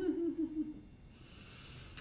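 A woman humming one wavering note with closed lips, about a second long and drifting slightly down in pitch, followed by a faint breathy hiss.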